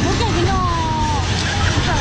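Fairground midway ambience: a steady low rumble from the rides and machinery, with the chatter of passing crowd voices over it.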